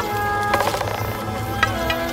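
Music: a song with held notes over a steady low bass pulse, and a quick stuttering run of notes about half a second in.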